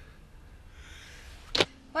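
Low room tone with a soft hiss, then a single short, sharp click about one and a half seconds in.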